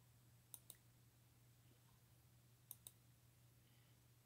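Near silence broken by two pairs of faint computer mouse clicks about two seconds apart, over a faint low hum.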